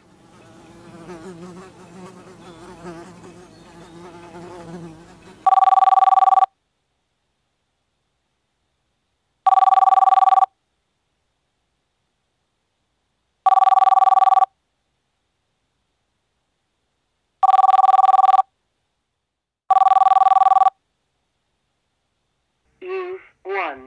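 A landline telephone rings five times unanswered. Each ring is about a second of rapidly pulsing two-tone electronic trill, roughly every four seconds, with the last ring coming sooner. Before the first ring there is a faint low wavering sound.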